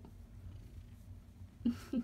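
Tabby cat purring steadily as it is stroked, a low even rumble. There is one short louder sound near the end.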